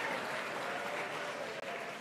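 Audience applauding in a large hall, slowly dying down.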